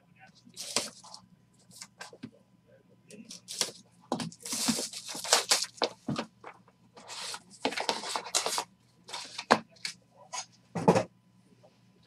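Plastic shrink-wrap being torn and crinkled off a sealed trading-card box in a run of irregular rustling tears, then the cardboard box being opened and handled, with a louder knock near the end.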